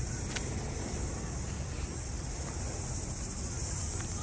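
Steady outdoor ambience: a high, even buzz of insects in the trees over a low rumble of road traffic and wind.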